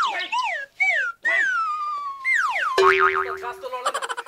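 Cartoon-style comedy sound effects: a run of short boing-like sounds sliding down in pitch, then a longer downward slide, and a short steady tone about three seconds in.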